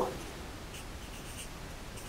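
Quiet room tone in a small room, with a few faint, soft scratchy rustles.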